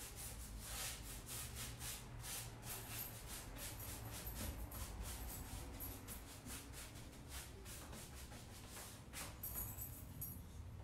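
Paintbrush laying chalk paint onto an oak vanity in quick, repeated strokes, a few a second, faint and scratchy.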